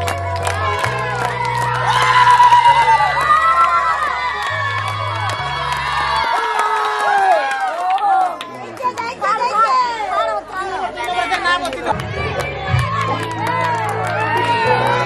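A crowd of children and adults shouting and cheering over loud music with a heavy, stepping bass line. The bass drops out about six seconds in and comes back strongly near the end.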